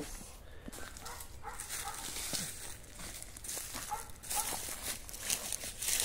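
Boots stepping through dry fallen leaves on garden soil, a scattered faint crunching and rustling, with a few faint animal calls.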